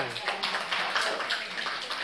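A small group applauding: many hands clapping together, slowly dying away.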